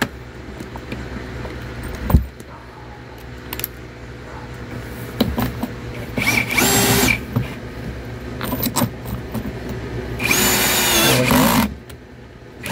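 Ryobi cordless drill driving a bolt into a dining chair's wooden frame. It runs in two bursts, about a second and then about a second and a half, with a steady whine. A few light clicks and knocks from handling fall between the bursts.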